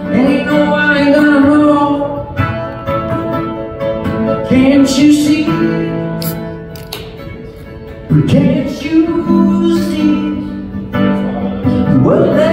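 A man singing with his own acoustic guitar, live. The song eases off to a softer passage a little past the middle, then swells again.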